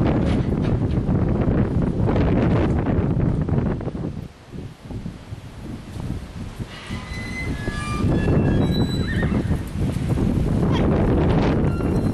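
A horse whinnies in a short series of calls about seven to nine seconds in, over hoofbeats of a barrel-racing horse galloping on arena dirt and wind on the microphone.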